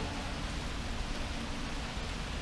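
Steady hiss of rain with a low rumble underneath.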